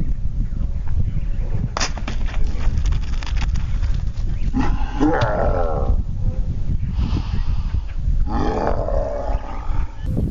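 Wind rumbling on the microphone throughout, a sharp crack about two seconds in as a sword strikes a plastic soda bottle, followed by a few lighter knocks. Then two growling yells from a man, one about five seconds in and one near the end.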